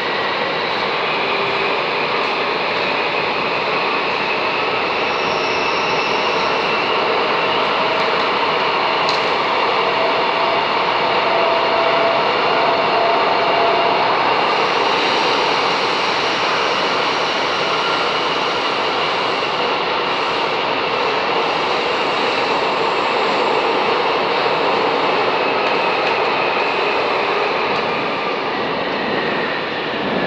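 Bucharest Metro M5 train running through a tunnel, heard from inside the carriage: a loud, steady rush of wheel and tunnel noise with faint motor whines gliding in pitch. Near the end the noise dips as the train comes into a station.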